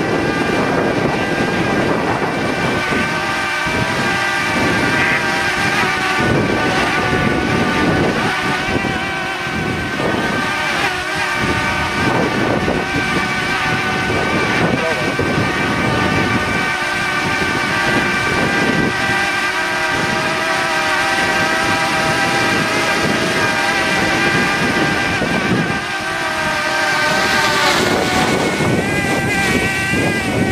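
Quadcopter drone's propellers buzzing in a steady whine made of several tones at once, the pitch shifting near the end as it manoeuvres, with wind rumbling on the microphone.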